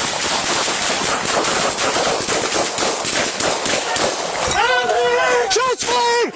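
Rapid, continuous gunfire in an exchange of shots, the many reports running together. About four and a half seconds in, a man starts shouting over it.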